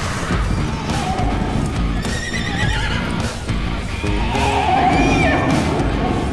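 Horses whinnying and hooves galloping over loud background music, with a whinny rising and falling about four seconds in.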